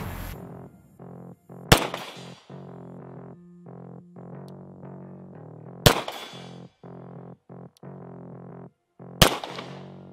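Three single shots from a Beretta M9 9 mm pistol, a few seconds apart, each dying away quickly, over synthesizer background music.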